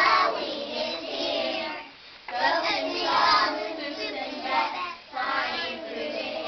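A group of young children singing together, in phrases with short breaks about two and five seconds in.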